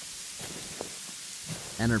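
Steady hiss of sleet coming down hard, with a couple of faint ticks.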